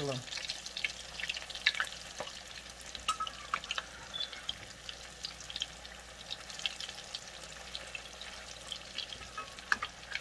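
Salmon croquettes frying in hot vegetable oil in a cast-iron skillet: a steady sizzle with many scattered pops and crackles as the patties are turned over with a metal spatula.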